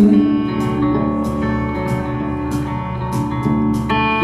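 Live rock band playing an instrumental passage between sung lines: electric guitar chords ringing out over bass and drums, heard from the audience.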